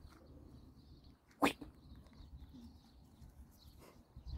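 A single short, sharp bark-like snort from a hamadryas baboon, about a second and a half in, with a faint low rumble of movement around it.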